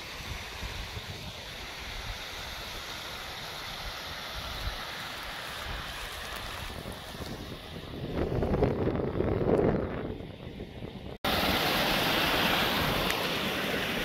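Wind rushing over the camera microphone, with a stronger gust about eight to ten seconds in. After a cut about eleven seconds in, a louder steady hiss of a small mountain stream running close by.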